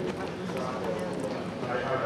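Indistinct chatter of many people talking at once in a hall, with a few short clicks or knocks.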